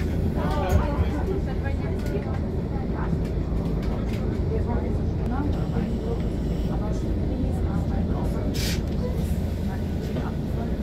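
Steady low rumble of a vehicle's engine heard from inside its cabin, with people talking in the background and a short hiss near the end.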